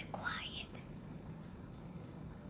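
A woman's soft whispered voice for the first second or so, then only a low steady hum.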